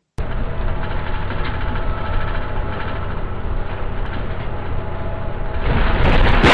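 City bus engine running, heard inside the cabin through an onboard security camera's microphone: a steady low rumble with faint steady tones that starts suddenly and grows louder near the end.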